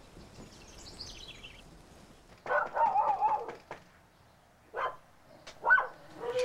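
A dog behind a screen door barking: one long, wavering, howl-like bark about two and a half seconds in, then shorter barks near the end. Before it, a faint high sound falls in pitch.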